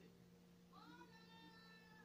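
A domestic cat meowing once: one long call that starts under a second in, rises at first and then holds steady.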